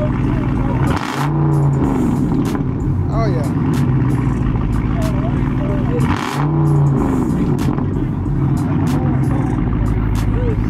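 Dodge Charger V8 idling through its exhaust, revved twice: once about a second in and again about six seconds in, each rev swelling and then settling back to idle.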